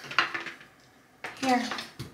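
Light metallic clicks and clinks from a curling iron being handled, its clamp and barrel knocking, in the first half second.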